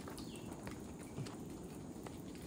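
Footsteps scuffing and knocking lightly on a stone forest path, a few separate steps, over a steady low rumble; a brief high falling chirp sounds just after the start.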